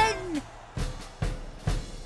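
Background music of three drum beats about half a second apart, after a voice trails off at the start.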